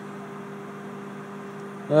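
Panasonic Genius inverter microwave oven running, a steady, even hum.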